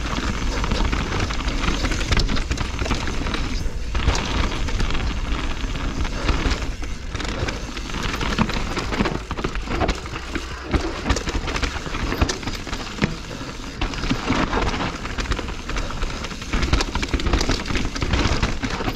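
2021 Propain Spindrift mountain bike descending a steep dirt and rock trail, heard from a camera on the rider: a steady rush of tyre and wind noise, dense with small knocks and rattles as the bike runs over stones and roots.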